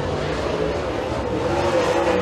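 Super late model dirt race car's V8 engine running on track, its pitch rising gently in the second half as it builds speed.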